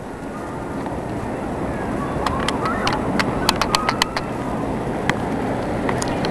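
Steady outdoor city background noise of distant traffic and wind, growing slightly louder, with a few sharp clicks in the middle.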